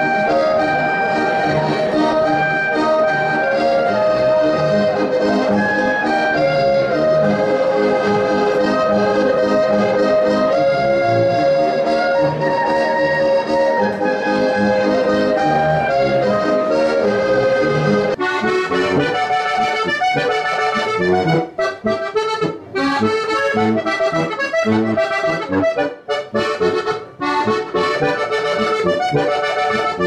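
Steirische Harmonika (Strasser diatonic button accordion) and clarinet playing a lively Alpine folk tune together. A little past halfway the music changes abruptly to a choppier harmonika passage broken by short gaps.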